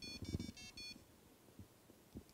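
A short electronic jingle from a computer speaker as the Logger Pro data-logging program opens: a quick run of high, bell-like beeps lasting about a second, then stopping. Faint knocks of hands on the desk sound under it.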